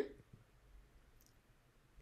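Near silence: quiet room tone with a faint click about a second in.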